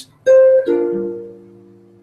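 Archtop jazz guitar sounding a chord struck about a quarter second in. The upper notes and then the bass shift as it rings and slowly fades: the usual harmony of the sequence, G minor 7 moving to C7.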